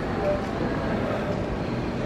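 Steady rumbling background noise of a large, busy indoor hangar, with faint distant voices mixed in.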